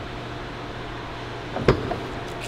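Steady low hum of an underground parking garage, with one sharp click near the end.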